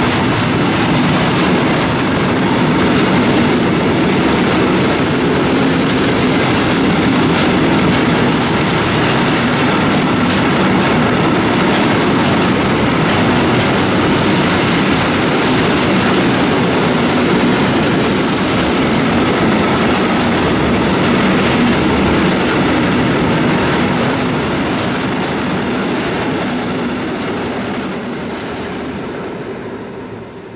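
Freight train of open coal wagons rolling past close by, a steady loud rumble with wheel clatter over the rail joints. It fades over the last several seconds as the end of the train passes.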